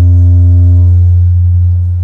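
Public-address feedback through the podium microphone: a loud, low droning howl held on one pitch. Its upper overtones drop away after about a second, and the tone then slowly fades.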